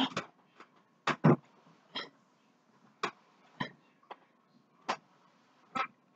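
Scattered short knocks and taps, about ten at uneven spacing, from hands working at a large cardboard box to get it open; a double knock a little over a second in is the loudest.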